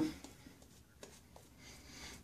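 Faint scratchy swishing of a boar-bristle shaving brush working shaving-soap lather on the face, with a few soft ticks.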